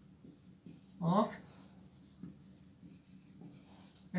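Marker pen writing on a whiteboard: a run of short, faint, scratchy strokes as a word is written out.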